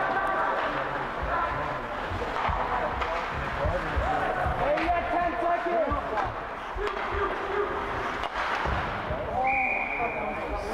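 Ice hockey game heard inside the rink: distant voices of players and spectators, with scattered sharp knocks of sticks and puck against the ice and boards. A short, steady high whistle sounds near the end as play stops at the net.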